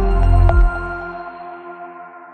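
Short electronic music sting for a logo: a swelling deep bass under held ringing tones, with a bright struck note about half a second in, after which the bass drops away and the chord rings on, fading.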